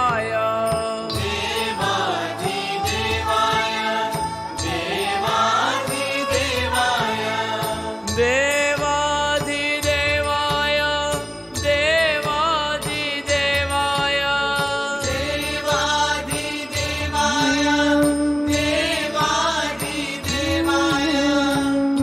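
Jain devotional chant music: a melody that slides and wavers in pitch over a steady drone and a regular beat.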